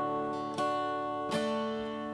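Acoustic steel-string guitar strummed slowly. A full chord rings out and is struck again twice, about half a second in and again near a second and a half, each strum left to ring.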